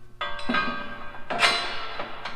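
Two sharp metallic clanks about a second apart, each leaving a bell-like ring: steel parts of the planter frame being struck or knocked together during assembly.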